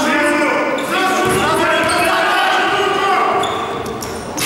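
A raised voice calling out in long held stretches, with a basketball bouncing on the wooden gym floor. The gym's echo is heard on both.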